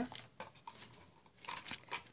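Faint rustling and crinkling handling noises, with a few short scratches and ticks, as hands arrange stiff handmade leaves on stems set in a plaster-filled pot; a small cluster of them comes near the end.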